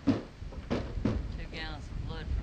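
Horse's hooves knocking on a trailer ramp as he backs out of a stock trailer: three heavy thumps, the first the loudest.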